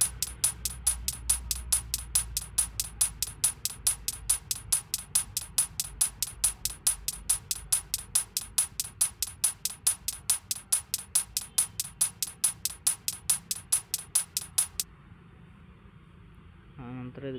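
EDM hi-hat sample loop playing on its own in FL Studio Mobile at 140 BPM: an even run of sharp, high hi-hat hits, about four to five a second. It stops about a second before the end.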